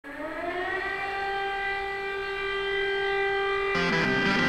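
Siren-like wail opening a rock song: one tone rises in pitch over the first second, then holds steady. Shortly before the end, a second, lower chord-like sound joins it.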